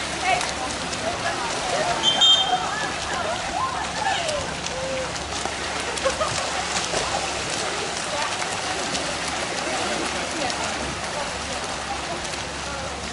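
Water splashing as water polo players swim and thrash in a pool, a steady crackling patter, with voices of people on the deck in the background.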